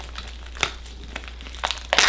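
Plastic wrapping and packing tape on a cardboard parcel crinkling and tearing as it is worked open by hand, in a few short crackles, the loudest near the end.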